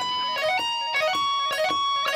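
Electric guitar playing a fast tapped legato lick, a quick string of clear single notes stepping up and down in pitch. It is the intended version of the tapping phrase that went wrong in the live solo.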